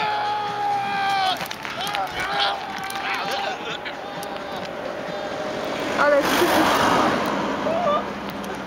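Long, high yells and screams of people during a bungee jump: one long held yell right at the start, shorter held calls a couple of seconds later, then a louder, noisier burst of shouting about six seconds in.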